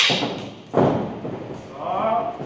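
Stick sparring: a sharp crack of a stick strike right at the start, then a heavy thud from footwork on the padded ring floor under way, and a brief vocal sound near the end.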